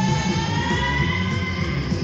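Hardcore punk cassette recording: a held, high electric guitar feedback tone, gliding slowly upward in pitch, over a low rumble from the band.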